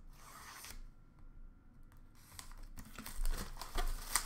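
A 2020-21 Upper Deck Series 1 hockey card pack wrapper being torn open and crinkled by hand, with sharp crackles that grow louder in the second half.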